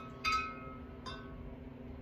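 A ringing clink of hard objects knocking together near the start, then a fainter clink about a second in, over a steady low hum.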